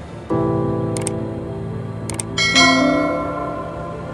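Soft background music: piano-like chords, each struck and then fading, with a new chord about a quarter second in and another about two and a half seconds in. Two quick double clicks come about one and two seconds in.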